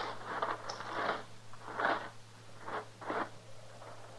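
Radio sound-effect crunching and scraping in dry dirt: about seven irregular gritty strokes, some close together, over a steady low hum from the old recording.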